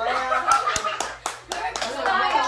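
Hands clapping in quick succession, about four claps a second, over excited young voices and laughter.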